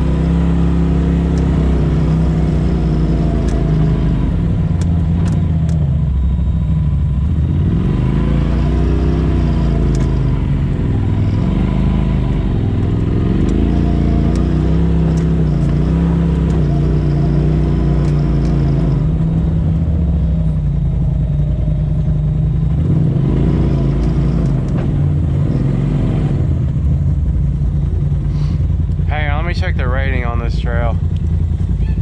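Polaris RZR side-by-side's twin-cylinder engine running at trail speed, its pitch rising and falling again and again as the throttle is eased on and off, with a few light clicks.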